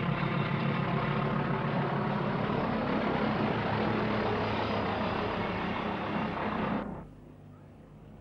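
English Electric Class 40 diesel locomotive climbing a gradient under load, its 16-cylinder engine a loud steady drone with a deep rumble as it passes. The sound cuts off abruptly about a second before the end, leaving a faint low hum.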